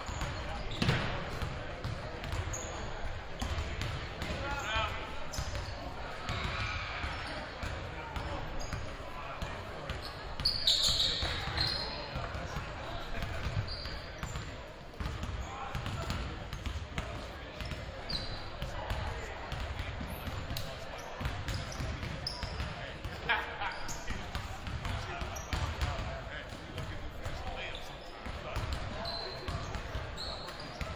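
Several basketballs bouncing on a hardwood gym floor in an overlapping, uneven patter, under steady chatter from players and crowd in an echoing gym. Short high squeaks come now and then, the loudest about eleven seconds in.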